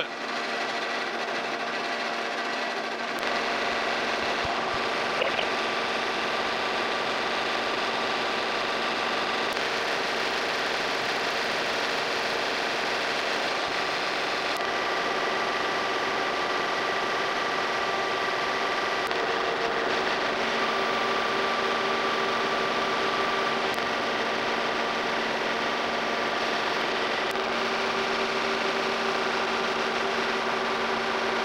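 Horizontal boring mill running a facing cut across a steam locomotive stoker engine's cylinder head: a steady machine hum with a few constant tones, growing fuller and lower about three seconds in.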